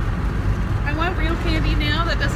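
Steady low road and engine rumble inside a moving car's cabin, with a woman's voice starting about a second in.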